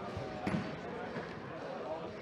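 A futsal ball struck on a sports hall floor, with one sharp thud about half a second in, over the echoing voices of players and spectators.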